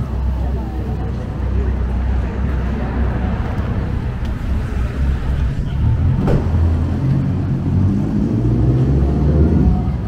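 Busy town-centre street: a steady low rumble of road traffic with passers-by talking, the rumble building a little toward the end, and one sharp click about six seconds in.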